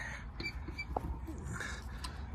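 Quiet outdoor background: a low steady rumble, a few faint short high chirps, and a single light click about a second in.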